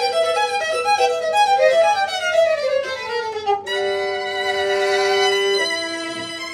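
Two violins playing a duet: quick repeated notes over a held note, one line sliding downward, then about three and a half seconds in both settle into long held notes that move to a new chord near the end.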